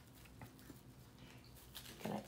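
Near silence, with a couple of faint ticks from fingers untying a small cellophane goodie bag.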